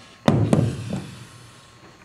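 A plastic blender jar half full of thick blended mush set down on a wooden table: one heavy thunk about a quarter second in, followed by a couple of lighter knocks that die away.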